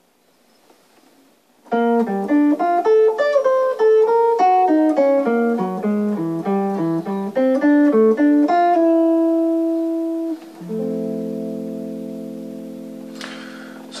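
Archtop electric jazz guitar playing a quick single-note eighth-note line built from chained triads over a Gm7–C7–Fmaj7 II–V–I. The line starts about two seconds in and ends on long held notes that ring out and slowly fade.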